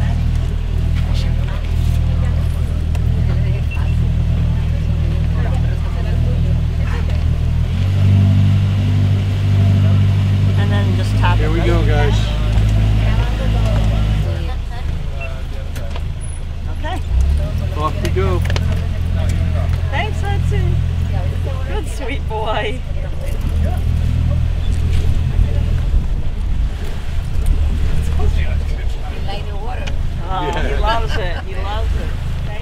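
Boat engine running with a steady low drone, rising in pitch about eight seconds in and dropping back about six seconds later, with faint voices over it.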